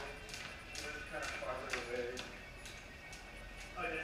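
Jump ropes slapping a concrete floor in a run of sharp ticks, over background music with a voice.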